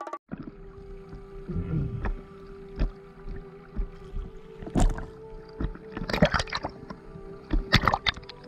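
Small sea waves sloshing and splashing against a camera held at the water surface, in irregular slaps. The strongest come about five, six and nearly eight seconds in.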